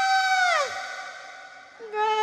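Female tayub singer's amplified voice holding a high sung note that slides down and breaks off about half a second in; a faint steady tone lingers, and singing resumes at a lower pitch near the end.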